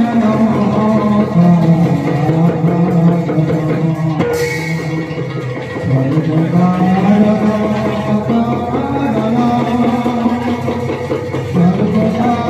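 Live Assamese Bhaona accompaniment: khol barrel drums beating a dense rhythm under a sustained, gliding sung melody, with a brief bright crash about four seconds in.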